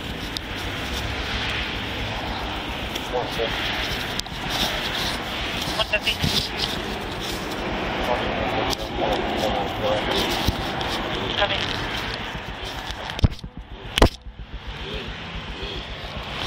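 Steady rustling and handling noise from clothing rubbing on a body-worn camera's microphone, under faint mumbling. Near the end come two sharp clicks a little under a second apart.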